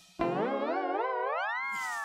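Comic background-score sound effect: a warbling tone that slides upward in pitch for about a second and a half, then settles on a held note.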